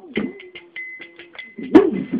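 Instrumental break in a Bengali Baul devotional song: quick hand-percussion strokes over a steady held drone tone. A single loud, sharp pitched call cuts in near the end.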